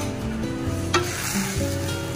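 Food sizzling on a hot iron teppan griddle, with a sharp click about a second in, under background music.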